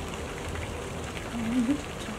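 Steady background hiss, with a brief low hum of a voice about one and a half seconds in.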